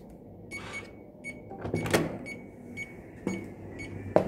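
Hotel room electronic key-card door lock beeping several short times as the card is read, with a loud latch clunk about two seconds in as the handle is pressed and the door opens.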